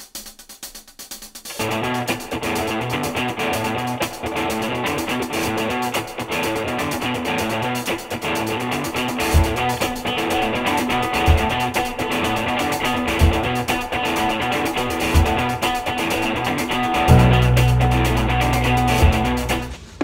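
Background music led by guitar, starting about a second and a half in, with low beats every couple of seconds in the second half and a heavy bass line coming in near the end.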